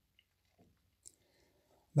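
Near silence: room tone with a few faint soft ticks and a brief faint hiss.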